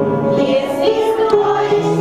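A group of young children singing a song together, with musical accompaniment, in a string of held notes.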